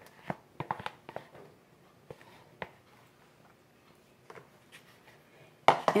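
Light clicks and scrapes of a spatula scraping whipped topping out of a plastic tub into a stainless steel bowl, most of them in the first second or so, thinning out after that. Near the end come a few faint knocks as the tub and spatula are put down.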